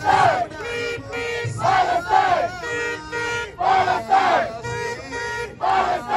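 Crowd of protesters chanting a slogan in unison, with the word "state", in a steady rhythm. A loud shouted beat comes about every two seconds, with held, pitched voices in between.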